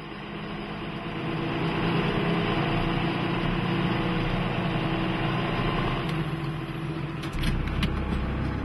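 John Deere front-loader tractor's diesel engine idling steadily, fading in over the first couple of seconds. A few sharp clicks come near the end.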